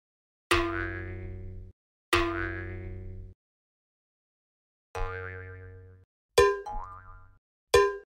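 Cartoon 'boing' sound effects added in editing: five separate boings, each starting sharply and fading, then cut off abruptly. The first two ring for about a second each; the last three are shorter and come closer together.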